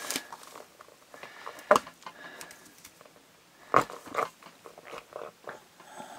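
A plastic X tool cutting into a toy alien's body, with scattered crunching and scraping and two sharper snaps about two and four seconds in.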